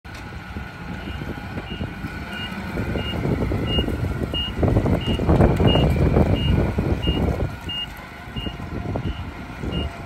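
Propane-fuelled Nissan 50 forklift engine running as the truck is driven, its warning beeper sounding steadily from about a second in, about three short beeps every two seconds. The engine noise swells louder through the middle.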